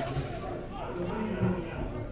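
Faint, distant voices over the steady background noise of an open football ground.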